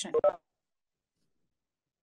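The last word of a woman's spoken question cuts off about half a second in, followed by dead digital silence from a video-call audio feed.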